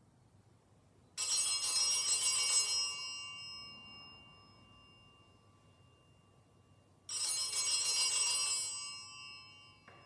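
Altar bells shaken twice, each a bright jangling ring of a second and a half or so that then dies away: once about a second in, again about seven seconds in. They are rung at the blessing with the monstrance at Benediction.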